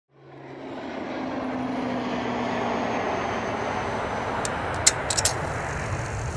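Steady aircraft engine drone that fades in over the first second, with a few sharp clicks about five seconds in.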